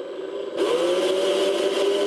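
Craftsman cordless drill running steadily as it drives a molly bolt's screw clockwise, drawing the slotted sleeve open behind the drywall. The motor starts quietly and gets louder about half a second in.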